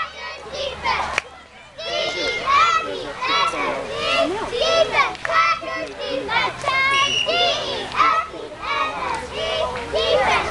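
Several children's high voices shouting and calling out at once, overlapping, with a brief lull about a second and a half in.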